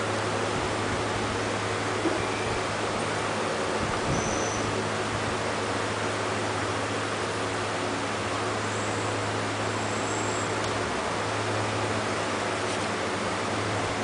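Steady hiss with a low steady hum: background noise of the room and recording, with no distinct event.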